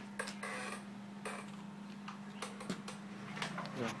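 Scattered light clicks and rattles of a disassembled HP Pavilion DV4 laptop's metal and plastic parts being handled, over a steady low hum.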